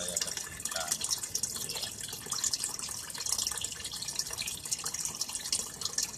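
Water from a small submersible filter pump running back into a washing-machine-drum fish tank, trickling and splashing steadily.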